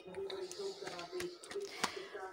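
Faint background voices in a small room, with a few light clicks from dough and utensils being handled; the sharpest click comes near the end.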